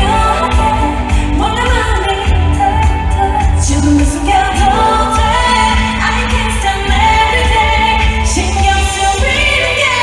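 K-pop girl group singing a pop song live over a backing track with heavy bass, heard loud from the audience in an arena.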